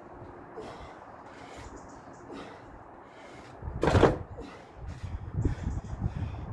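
A man breathing hard through a set of pull-ups: short, sharp exhalations every second or so, with one much louder forceful exhale just before four seconds in.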